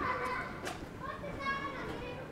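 Children shouting and squealing in high voices: a long call trails off at the start and another comes about a second and a half in.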